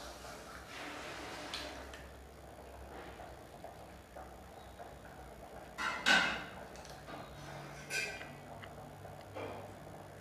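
Faint rubbing of a sugar-and-coffee scrub on a lemon piece against facial skin, with a few short scratchy noises, the loudest about six seconds in.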